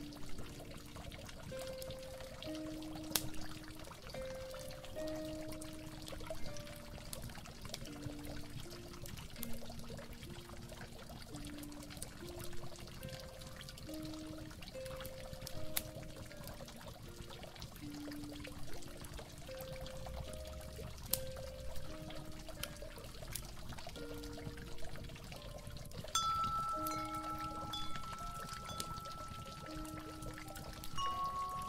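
Water pouring and trickling steadily under a slow, mellow instrumental melody of held low notes, with occasional soft clicks. About 26 seconds in, a higher held tone and chime-like notes join the music.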